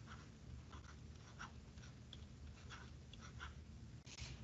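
Faint scratching and tapping of a stylus on a tablet screen as a word is handwritten: a string of short, separate strokes over a low steady hum.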